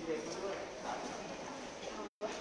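Indistinct voices in a large hall, with hard-soled shoes and heels clicking on a hard floor as people walk in a line.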